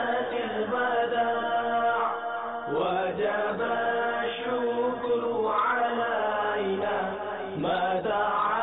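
Male voice chanting a devotional Islamic recitation in long, drawn-out notes that slide up at the start of each phrase, without a beat.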